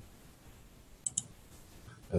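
Two quick computer mouse clicks about a second in, over faint room hiss.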